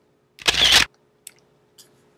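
Shutter sound of a Sony Cyber-shot compact digital camera about half a second in, one short burst just under half a second long, followed by two faint clicks.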